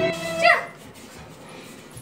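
Background music breaks off right at the start. About half a second in comes a short, loud yelp that falls steeply in pitch, then only a faint steady background.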